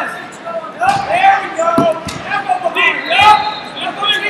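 Wrestling shoes squeaking repeatedly on a rubber wrestling mat as two wrestlers grapple and one shoots for a takedown, with a few dull thuds of bodies and feet hitting the mat, in a reverberant hall.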